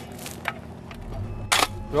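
A few sharp strikes of a digging tool into dry, stony earth, the loudest about one and a half seconds in.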